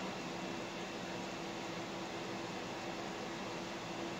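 Steady room tone: an even hiss with a faint constant hum, and no sudden sounds.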